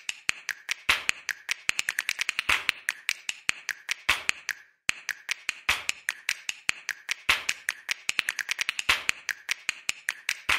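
Dry percussive clicks and snaps in a quick rhythmic pattern, its loudest hits recurring about every second and a half, with a brief break about five seconds in.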